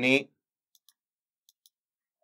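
Faint computer mouse clicks: a quick cluster of light clicks a little under a second in and two more about a second and a half in.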